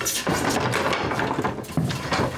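Old wooden floorboards being pried up and handled: a quick run of knocks and clatters of wood on wood.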